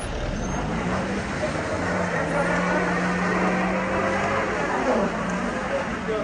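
A car engine revving and held at high revs as the car, stuck in snow, is pushed free; the engine note climbs a little at the start, holds steady, then falls away about five seconds in.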